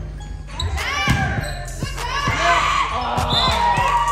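Indoor volleyball rally: the ball is struck several times with sharp hits, while players and spectators shout, louder in the second half, all echoing in a gym.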